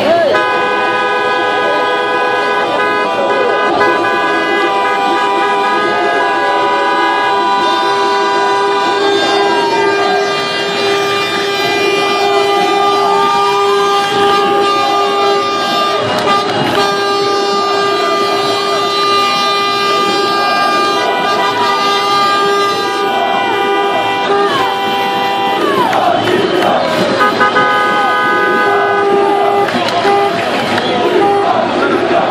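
A vehicle horn held down almost without a break, one steady tone, over a crowd shouting and cheering in the street.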